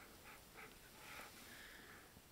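Near silence, with a few faint, soft breath-like sounds close to the microphone.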